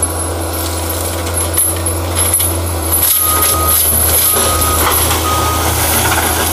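Compact track loader carrying a Fecon forestry mulcher head, its diesel engine running steadily with a thin high whine above it. In the second half its reversing alarm beeps three times, about a second apart, as the machine backs up.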